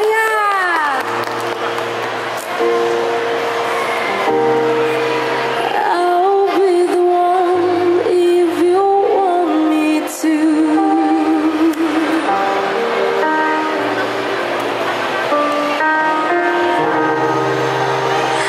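A young girl singing a slow pop ballad into a handheld microphone over instrumental accompaniment, amplified through the stage PA. About the middle she holds long notes with a wavering vibrato.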